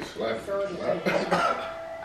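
Speech: anime character dialogue playing from the episode, with a cough.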